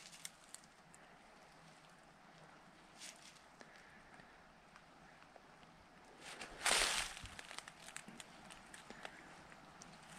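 Quiet woodland background with a few faint rustles and ticks in dry leaf litter and brush, and one louder brushing rustle lasting about half a second, about seven seconds in.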